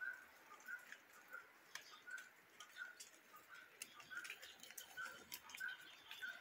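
Faint bird calling with a short chirp repeated steadily, about two or three times a second, among faint scattered ticks.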